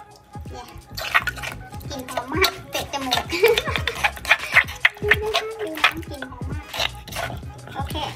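A metal spoon clinking and scraping against a mortar as somtam dressing is stirred, a run of short, uneven clicks.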